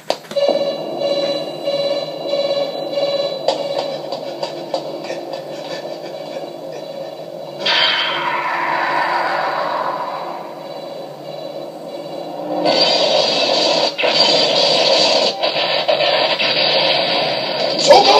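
Soundtrack of an anime video playing back through a computer monitor's small speakers: music and effects with no bass. It swells about 8 s in and grows louder and denser from about 13 s.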